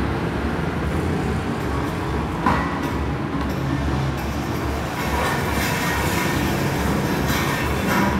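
Plastic wheels of a toddler's push toy rolling over a tiled floor, a continuous rumble, with a single knock about two and a half seconds in.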